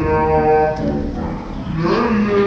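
A low, droning, voice-like tone holding one steady note for about a second, then fading, with a rising hiss near the end.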